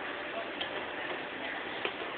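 Shopping cart tapped as a percussion instrument: two sharp clicks about a second and a quarter apart, over a steady background hiss.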